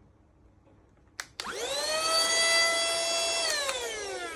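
A click about a second in, then a cordless handheld vacuum cleaner's motor spins up with a quickly rising whine and runs steadily. Near the end the whine starts to fall as the motor winds down.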